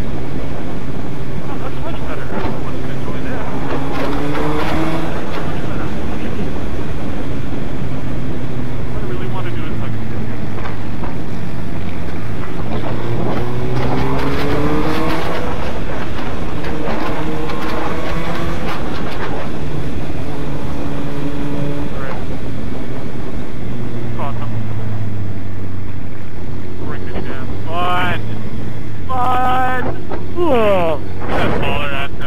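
A 2005 Suzuki GSX-R1000's inline-four with a full Yoshimura exhaust system, running under way on the road. Its pitch climbs and drops back several times as the throttle is worked.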